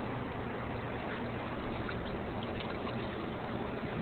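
Steady background of moving river water with a faint, even low hum underneath and no distinct events.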